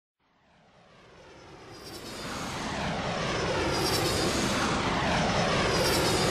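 Airplane engine sound fading in from silence and growing steadily louder over several seconds, with a gliding pitch.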